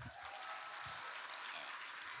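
Audience applauding, a quiet, steady patter of many hands clapping.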